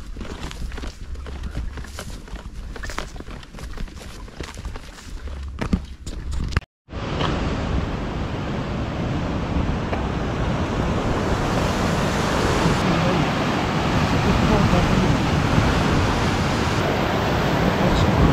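Footsteps and rustling through dry ferns on a path, with scattered small clicks. After a sudden cut about seven seconds in, a steady rush of sea surf and wind below a rocky cliff.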